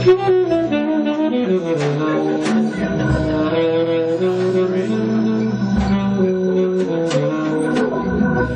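Live jazz from an organ quartet: Hammond B3 organ, saxophone, electric guitar and a drum kit playing together, with melodic lines moving in steps over a bass line and steady cymbal and drum hits.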